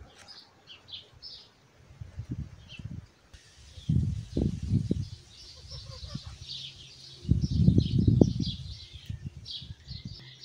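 Small birds chirping and twittering over and over. Twice, about four seconds in and again from about seven to eight and a half seconds, a louder low rumbling noise swells and fades.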